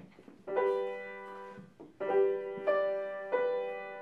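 Grand piano playing the first chords of a piece. A chord comes in about half a second in and rings out slowly, then new chords are struck at about two seconds, with further notes after.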